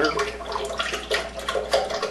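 Liquid being poured into a blender jar, with uneven splashing.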